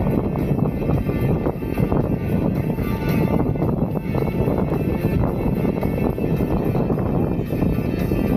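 Wind rushing and buffeting on a camera microphone while riding an electric unicycle along a paved path, a steady low rumble with music playing underneath.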